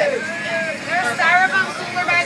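Voices talking, some overlapping, inside a wood-panelled trolley, with the vehicle's steady running noise underneath.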